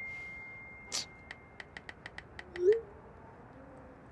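A phone's text-message ding fades out, followed by a quick run of about nine light phone keyboard taps, with a brief low rising blip near the end of the taps.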